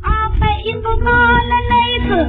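A female singer on a 1931 Columbia 78 rpm shellac record sings a sustained, wavering melodic line over accompaniment, in classical Hindustani style. The old disc transfer sounds thin and narrow, with nothing above the upper midrange.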